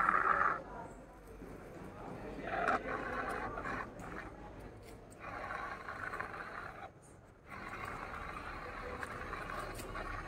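Small DC gear motors of a two-wheeled Arduino robot car whirring in runs of a second or two, stopping and starting again several times as the car is driven and turned.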